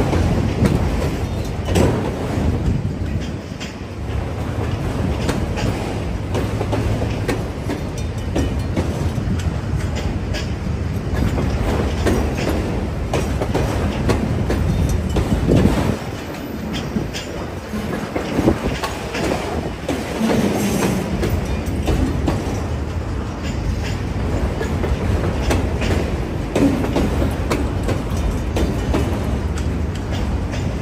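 Freight train of autorack cars rolling past, a steady rumble with the clatter and clicks of steel wheels over the rail joints.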